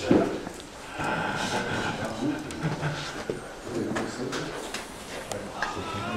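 Low, indistinct murmur of people talking, with a sharp knock right at the start and a few small clicks of handling noise.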